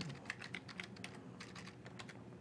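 Computer keyboard being typed on: a quick, even run of light key clicks as a short word is entered.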